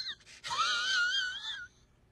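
A high, wavering whistle-like tone with a quick wobble, lasting about a second, from an inserted comedy meme clip used as a reaction to a badly missed shot.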